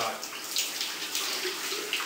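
Shower running, a steady spray of water falling onto a person standing under it.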